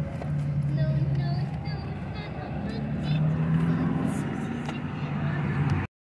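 A car's engine idling, a low steady hum heard inside the cabin, with a few light clicks and rustles of nylon straps being handled.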